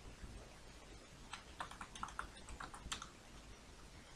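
Computer keyboard typing, faint: a quick run of about ten keystrokes between about one and three seconds in.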